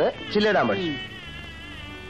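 A drawn-out vocal cry that sweeps up and then slides down in pitch over about the first second, with background music continuing underneath.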